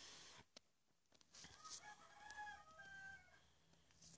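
Near silence, with a faint, distant pitched animal call lasting about two seconds in the middle.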